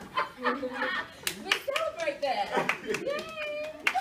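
Several sharp hand claps, unevenly spaced, mixed with lively talk and a drawn-out vocal exclamation near the end.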